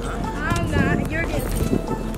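Background music with a high-pitched voice calling out briefly, over a run of quick low thumps.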